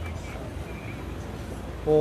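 Steady low background rumble with no distinct event, and a man's voice starting near the end.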